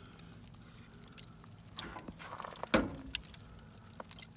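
Scattered small crackles and pops from a bed of burning wood charcoal in an outdoor wood boiler's firebox, with one sharper pop partway through, over a faint steady low hum.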